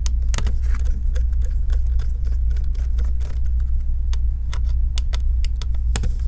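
Small Phillips screwdriver backing out laptop hinge screws: a run of small, irregular clicks and ticks from the bit working in the screw heads, coming thicker in the second half, over a steady low background hum.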